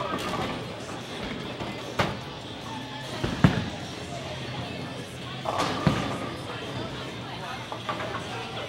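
Bowling alley: a bowling ball drops onto the wooden lane with a loud thud about three and a half seconds in and rolls away, among other thumps and a steady din of chatter and music in the hall.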